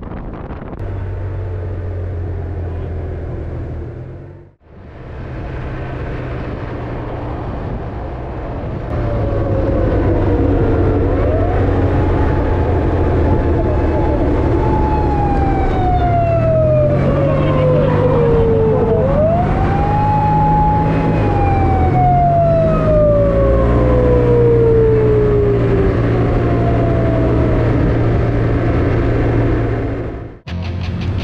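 Japanese police patrol car siren sounding close behind a motorcycle, over engine and wind noise. Starting about a third of the way in, its wail rises, holds high, slides slowly down, then rises and falls once more. It is apparently sounded to warn a car that merged in violation.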